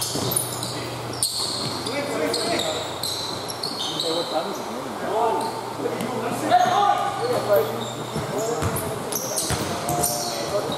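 Basketball game sounds in a large gym: the ball bouncing on the court floor, sneakers squeaking in short high chirps, and players' indistinct calls.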